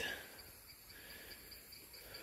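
Faint outdoor quiet with an insect chirping in a steady, evenly pulsed high tone.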